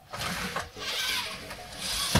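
NAO humanoid robot's joint motors and gears whirring as it moves out of its crouch, starting abruptly and coming in two surges with a short dip between, then rising again near the end. Faint music plays underneath.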